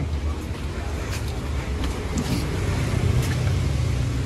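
Busy street ambience: a steady low rumble of road traffic, with faint voices of passers-by and a few light clicks.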